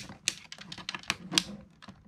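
Irregular sharp plastic clicks and taps from a hand-held plastic ninja-star toy morpher as its spring-loaded blades are moved out and its parts handled.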